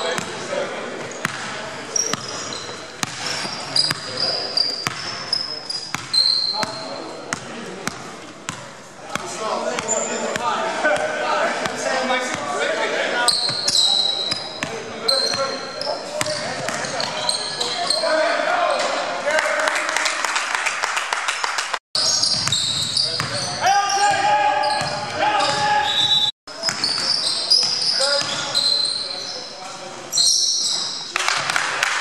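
Basketball game on a hardwood gym floor: a ball bouncing repeatedly as it is dribbled, sneakers squeaking in short high chirps, and players' voices calling out. The sound cuts out briefly twice in the second half.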